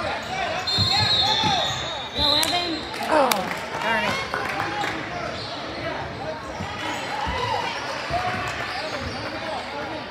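Basketball bouncing on a hardwood gym court during a game, with a crowd of voices echoing in the hall. A high, steady referee's whistle sounds about a second in and again near two and a half seconds.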